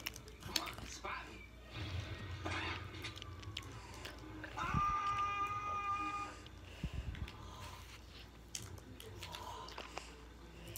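Close-up mouth sounds of a child chewing and sucking a sour candy, with scattered small clicks and smacks. About halfway through there is a brief high-pitched hum lasting a second or so.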